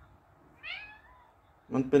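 A grey domestic cat gives one short, faint, high meow that rises and then falls in pitch, about half a second in.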